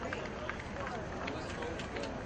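Faint, irregular hoofbeats of a show-jumping horse cantering on grass, over a steady background of indistinct voices.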